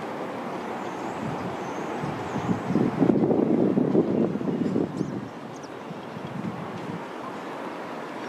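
Outdoor ambient noise: a steady rushing background that swells into a louder rough rush from about three to five seconds in, then settles, with a few faint high chirps over it.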